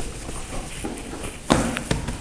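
Hands pressing and patting soft yeast dough flat on a floured stone countertop: soft dull pats, with a sharper knock about one and a half seconds in.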